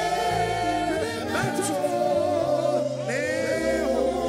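Live gospel worship music: several men singing into microphones over a band, with held low bass notes that change about once a second.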